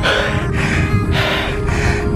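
Heavy panting, about two breaths a second, over background music.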